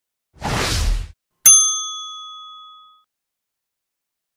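A short burst of rushing noise, then a single ding of a service bell that is struck once and rings out for about a second and a half, fading away.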